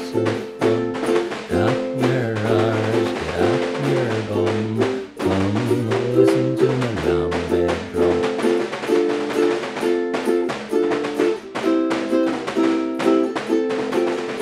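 Ukulele strumming an instrumental passage while a Lambeg drum, beaten with thin canes, keeps up a fast, dense run of sharp strokes in a traditional Lambeg rhythm.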